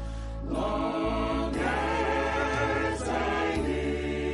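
Mixed church choir singing a slow hymn in sustained chords, with a low held bass under the voices. The voices thin out briefly at the start, come back in within half a second, and swell about a second and a half in.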